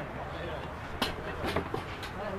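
Footballers' voices calling out on the field, with two sharp knocks about a second and a second and a half in.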